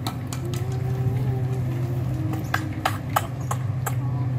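About ten irregular sharp clicks over a steady low hum.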